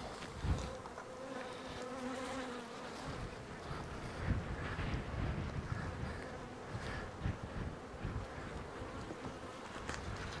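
Honeybees buzzing around an opened hive, a steady hum, with a few light knocks as a frame is handled.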